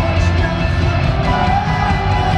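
Live rock band playing loudly on electric guitars, with a held note coming in about midway, heard from the audience in an arena.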